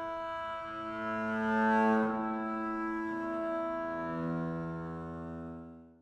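Solo double bass playing sustained, ringing notes (natural harmonics and open strings), with a new note entering every second or so. The sound is loudest about two seconds in and fades out near the end.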